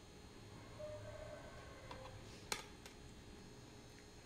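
Very faint sound of a knife scoring diagonal lines into raw kibbeh mixture in a glass baking dish, with one light click about two and a half seconds in.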